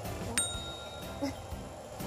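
A single bright, bell-like ding, struck once about a third of a second in and ringing out over about a second.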